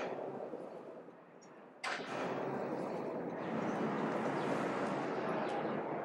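Outdoor city street noise that fades down, then cuts back in abruptly and louder a little under two seconds in, with a sharp onset, as a new stretch of street sound begins.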